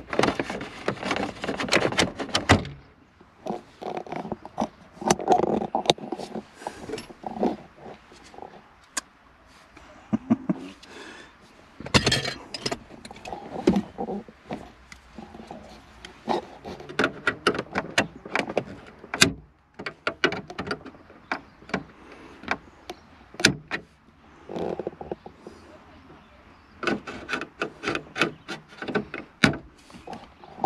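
Irregular clicks, knocks and scraping of plastic dashboard trim and parts being worked loose and pulled out of a Holden VS Commodore's dash, in short bursts with brief pauses.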